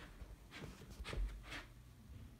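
Faint rustling and soft knocks from a person moving with a handheld camera, with a low soft thump a little after a second in.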